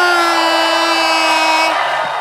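Club crowd cheering, with one voice holding a long, steady yell that stops shortly before the end.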